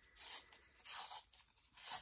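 A piece of Tetra Pak carton being peeled apart by hand, its paperboard layer tearing away from the silver foil-lined layer in about three short, papery rips.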